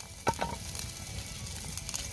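Burger patty sizzling in a skillet over a campfire, a steady frying hiss with a few small clicks near the start.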